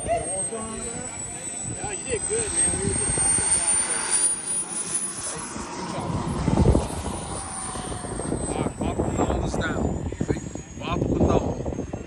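Jet turbine engines of a radio-controlled scale A-10 Warthog model whining through a landing: the thin high whine falls in pitch, rises a little about midway, then slowly drops as the model rolls out on the runway. A brief low rumble, the loudest moment, comes about six and a half seconds in, and people chat in the background.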